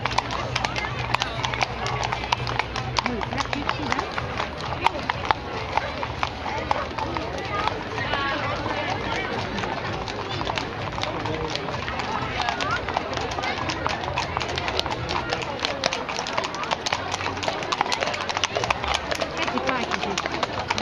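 Horses' hooves clip-clopping at a walk on a paved street as a file of riders passes, over steady chatter from a crowd of onlookers.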